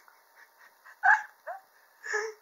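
A birthday sound card playing a recorded dog barking: two short barks about a second in, half a second apart.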